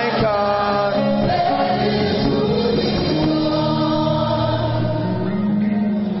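Gospel worship song: a choir singing slowly in long held notes over music.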